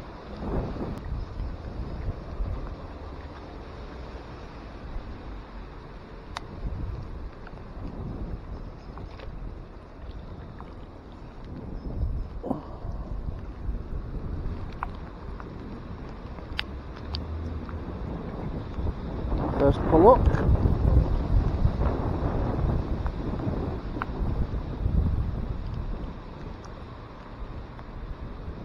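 Wind buffeting a small camera microphone over steady heavy rain on water, loudest about two-thirds of the way through, with a few faint knocks and a brief mumbled voice.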